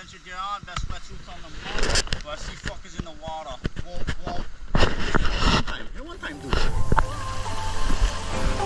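A man's voice talking in short snatches, with a few knocks. Background music comes in about two-thirds of the way through.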